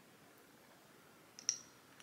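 Faint clicks from a Banish microneedling stamp pressed against the cheek: a sharp double click about one and a half seconds in, then a softer click at the very end.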